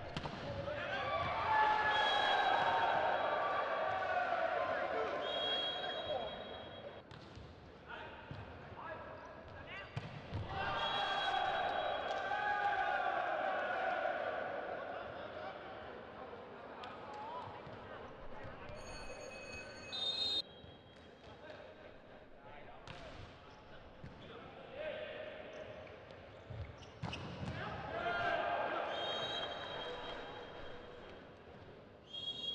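Indoor volleyball play in a sports hall: the ball smacks off hands and floor in repeated sharp impacts, and crowd voices swell loudly twice. A short, high referee's whistle sounds about twenty seconds in.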